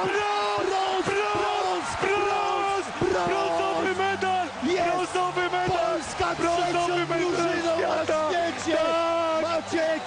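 A television commentator yelling in long, high-pitched cries of joy over an arena crowd cheering, at the final whistle of a one-goal handball win.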